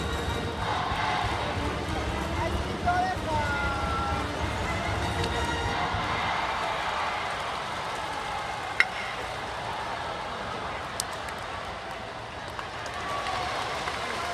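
Stadium crowd noise from packed stands, with cheering voices and band music. A single sharp crack about two-thirds of the way in stands out above it, a bat striking the pitched ball.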